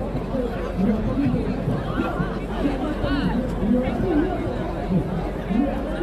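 Several people talking at once: indistinct, overlapping chatter with no words clearly made out.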